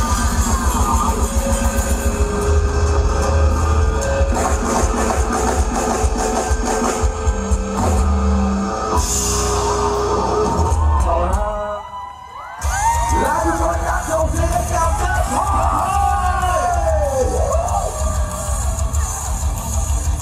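Live rock band with electric guitar and drums playing the end of a song. The music stops about twelve seconds in, and a crowd cheers and screams with many overlapping high voices.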